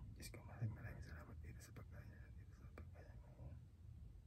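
Very quiet whispering of a silent grace before a meal, with a few faint clicks.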